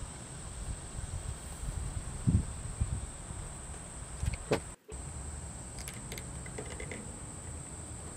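Outdoor ambience: a steady high-pitched insect drone over a low rumble of wind, with a few faint soft knocks. The sound cuts out for a moment just after the middle.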